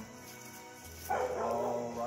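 A Great Pyrenees–heeler pup gives one loud bark about a second in, lasting most of a second, over steady background music.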